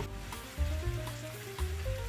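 Background music with a stepping melody, and sliced onions sizzling in olive oil in a frying pan underneath it.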